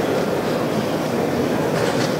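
Steady background noise of a busy exhibition hall, a dense even noise strongest in the low range, with no distinct events.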